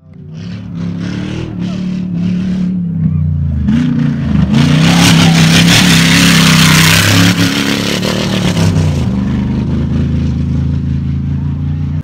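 Rally 4x4's engine running hard at high revs, its pitch dipping and climbing again about four seconds in, with a loud rush of noise in the middle as it passes close at speed on the dirt track.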